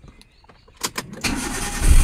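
Maruti Suzuki Alto's three-cylinder petrol engine being started with the key: a couple of clicks a little under a second in, then the starter cranks and the engine catches near the end, getting louder.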